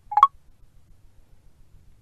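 iPhone VoiceOver sound cue: one short electronic blip, a low note stepping up to a higher one, sounding as a one-finger upward swipe moves the home-screen page indicator on to the next page.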